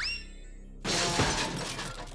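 A short rising cartoon glide, then a sudden loud crash sound effect about a second in, a clattering burst with a shattering edge that fades away over about a second.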